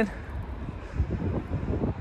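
Wind buffeting the microphone: an uneven low rumble with a few stronger gusts.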